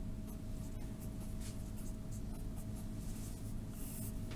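A pen writing on lined notebook paper: many short scratchy strokes as a math expression is written out, over a faint steady hum.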